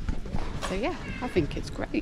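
A person's voice making a short sliding vocal sound that rises and then falls, with a few sharp clicks around it.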